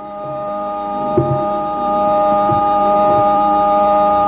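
Harmonium holding a sustained chord as the bhajan's introduction, swelling in over the first couple of seconds, with a short knock about a second in.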